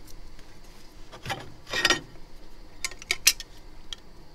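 Handling of a curved phone front glass and an aluminium mould: a rubbing scrape about a second in, then a few sharp clicks around three seconds as the glass is set into the metal mould.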